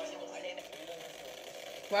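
Low voices from the compilation being played, at a lower level than the reactor's own voice. Right at the end, a woman's voice starts loudly.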